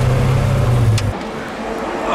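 McLaren F1's BMW V12 running steadily at low speed, heard from inside the cabin. The engine sound cuts off suddenly with a click about a second in, leaving quieter background noise.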